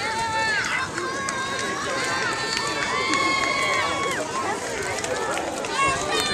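Several high-pitched young voices shouting in long, drawn-out calls that overlap for about the first four seconds, over outdoor crowd chatter.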